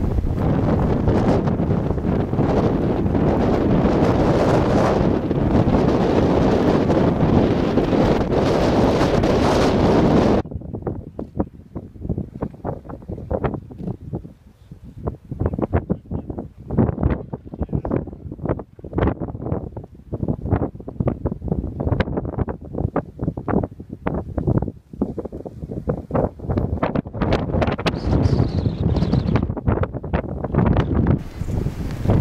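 Strong wind buffeting the microphone in a blizzard. For about the first ten seconds it is a dense, steady roar. After a sudden change it comes in irregular, gusty blasts.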